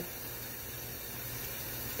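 Thin stream of tap water running steadily from a kitchen faucet onto a stainless steel sink, a soft even hiss.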